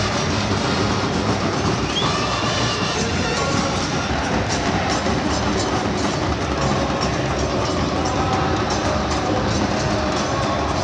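Large football stadium crowd of supporters singing and chanting together, with drums beating in the stands, a dense steady wall of sound.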